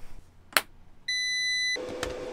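A sharp click as the battery lead is reconnected, then a single steady beep of well under a second from the MPP Solar 48 V inverter/charger powering up, followed by a steady low hum from the now-live inverter.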